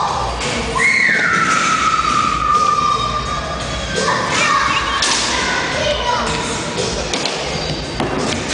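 Skateboard wheels rolling on a wooden ramp with thuds from the board, under a steady low rumble. Over it, a long high tone slides downward twice.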